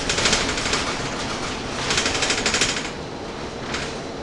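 Rattling inside a Gillig Phantom transit bus as it rides: a burst of rapid clattering about a second long at the start, another in the middle and a shorter one near the end, over the steady noise of the running bus and its HVAC fans.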